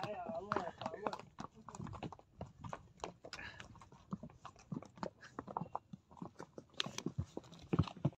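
Hooves of a ridden horse clip-clopping at an uneven walk on a stony dirt trail, a quick irregular run of knocks, with a faint voice in the first second.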